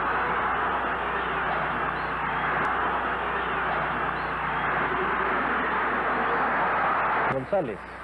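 Steady noise of a large stadium crowd, with a low hum underneath, cutting off abruptly about seven seconds in.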